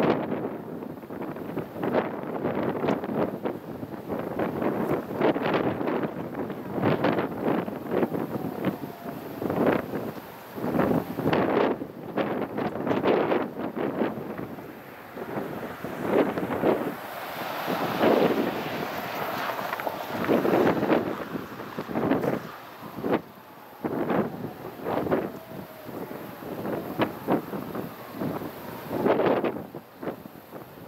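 Wind buffeting the microphone outdoors, rising and falling in irregular gusts.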